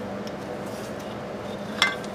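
Metal parts of an antique Briggs & Stratton engine being handled as the camshaft is worked out of the cast-iron housing: one sharp metallic clink near the end, over a steady low hum.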